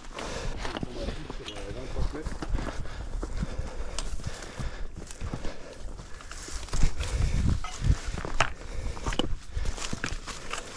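Footsteps crunching and scuffing on a stony trail at walking pace, with irregular sharp clicks of hiking poles striking rock.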